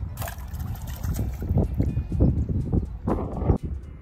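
Wind buffeting the microphone in irregular gusts, with a brief splash of water just after the start as a released bass hits the pond.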